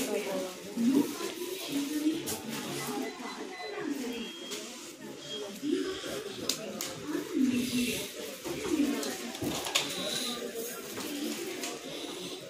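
Indistinct voices talking throughout, with a few short clicks and handling knocks.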